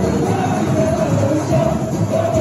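A samba school's members singing their samba-enredo together over loud live samba music, steady and without a break.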